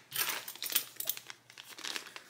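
Clear plastic bag crinkling as it is picked up and handled: a run of irregular crackles and small clicks that fades toward the end.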